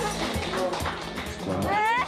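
Music and voices, ending in a high cry that rises steeply in pitch: a joyful whoop.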